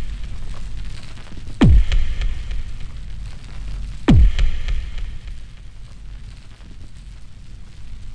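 Cinematic logo-reveal sound effects: a deep low rumble with two heavy impact hits, about a second and a half and four seconds in, each a quick falling sweep that drops into a bass boom. The rumble eases off toward the end.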